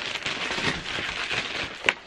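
Plastic wrapping crinkling and crackling as it is pulled off a package by hand, with a sharper crackle near the end.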